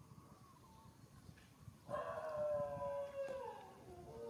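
Infant long-tailed macaque crying as it seeks to nurse from its mother. A faint whimper at the start gives way, about two seconds in, to a loud drawn-out wail that slowly falls in pitch.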